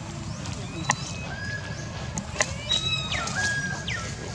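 Macaques calling with drawn-out, high-pitched tonal calls, one held note near the middle and another that drops in pitch and then holds toward the end, over a steady background rush. There are two sharp clicks, about a second in and about halfway through.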